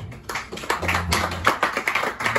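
Audience clapping at the end of a song, the individual claps sharp and distinct, starting just as the last acoustic guitar chord dies away.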